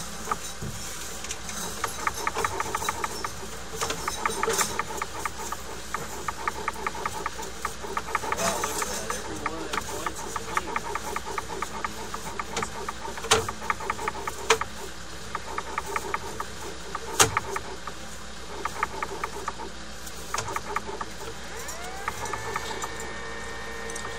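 Sewer inspection camera push rod being fed into a drain line, with a rapid run of rhythmic clicking and a few sharper knocks. A pitched whine rises and then holds near the end.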